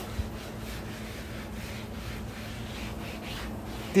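Cotton rag rubbing over the wet steel cooking surface of a Blackstone griddle, a soft, steady wiping with no distinct strokes, over a faint steady hum.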